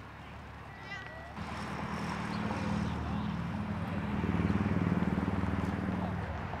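A motor vehicle's engine rumbling past on the road, building from about a second and a half in and loudest near the end.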